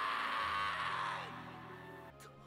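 Anime soundtrack: music under the fading tail of a shouted name, dying away about a second and a half in.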